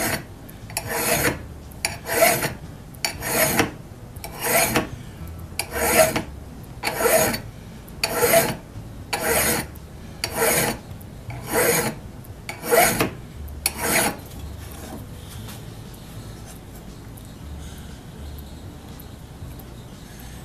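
Hand file strokes on the steel radial cutting edge of a Greenlee auger bit, about one stroke a second, sharpening the edge. The strokes stop after about fourteen seconds.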